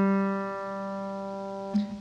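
Acoustic guitar's open third (G) string ringing out after a single thumb downstroke, fading steadily and stopping shortly before the end.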